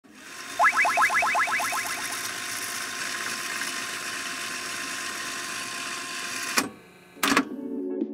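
Animated logo intro sound effects: a glitchy hiss swells up with a quick run of about a dozen rising chirps. It is cut off by a sharp hit, followed by a brief near-quiet gap and a second hit. Music starts just after.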